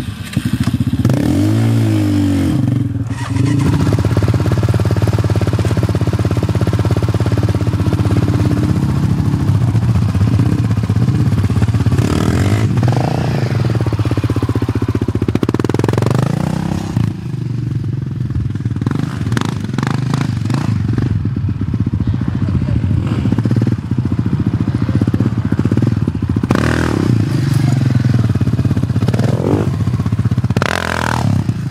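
Yamaha Raptor sport quad's single-cylinder engine running steadily, revved briefly about two seconds in, then revved up and down again around halfway as the quad pulls away and drives off under throttle.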